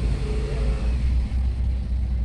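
A steady low rumbling hum, with a faint tone over it during the first second.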